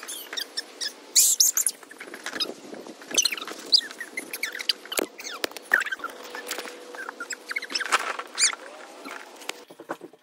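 Rapid, irregular run of short high-pitched squeaks and chirps with quick pitch glides, with a few sharp knocks about halfway through.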